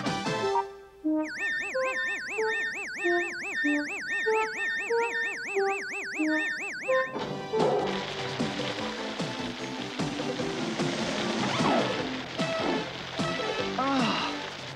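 Cartoon sound effects: a warbling electronic tone with a stepped melody of beeps for about six seconds, from the van's control panel being set off, then the hiss of water spraying from overhead sprinklers, over background music.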